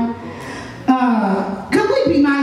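A woman's voice over the microphone: a short wordless vocal sound, falling in pitch, about a second in, after a quieter moment.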